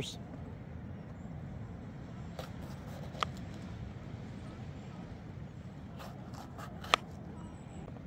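Knife slicing a green bell pepper on a plastic cutting board: a few sharp clicks as the blade meets the board, then a quick run of four near the end, the last the loudest, over a steady low rumble.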